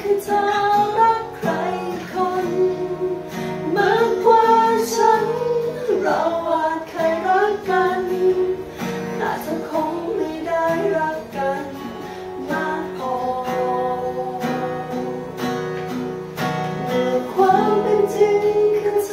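Acoustic guitar strummed as accompaniment to a woman singing a slow pop ballad, with a man's voice singing along in duet.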